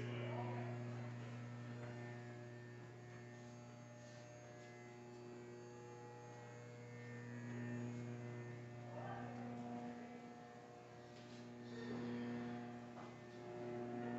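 Steady electrical hum, a low buzz with a row of evenly spaced overtones, with faint voices briefly audible about nine and twelve seconds in.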